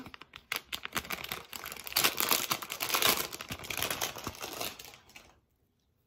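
Clear plastic bag crinkling as a hair roller is unwrapped from it: a dense run of sharp crackles, heaviest in the middle, that stops about half a second before the end.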